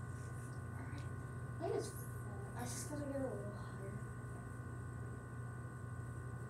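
A steady electrical hum with several fixed tones, with faint muttering and two brief handling noises, about two and three seconds in, as the lamp is moved.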